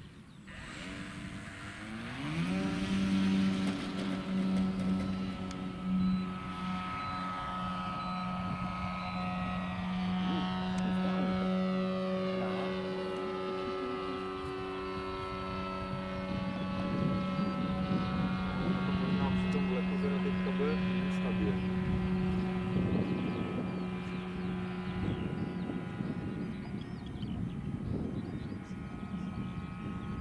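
Electric motor and propeller of a quarter-scale RC Piper J-3 Cub tow plane spinning up about two seconds in to a steady high whine and holding full power while towing a glider up. The pitch stays level as it climbs away, with slowly shifting overtones.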